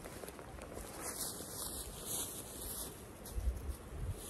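Footsteps and rustling in dry grass and fallen leaves, with a few soft low thuds about three and a half seconds in.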